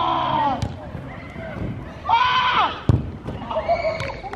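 Footballers shouting across the pitch in long, high, drawn-out calls, three of them. About three seconds in comes a single sharp thud of a football being struck.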